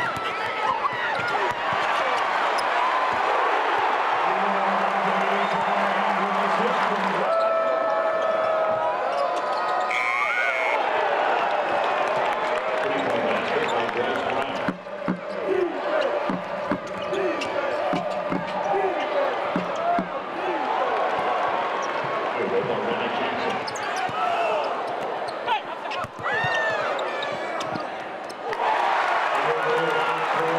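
Live college basketball game in a large arena: a basketball dribbled and bouncing on the hardwood amid steady crowd noise and voices, with short squeaks of shoes on the court. A brief high tone sounds about ten seconds in, and the ambience changes abruptly a few times.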